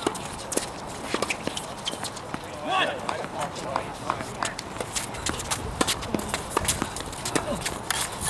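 A tennis point on a hard court: a string of sharp racket-on-ball hits and ball bounces mixed with footsteps, and a short voice call about three seconds in.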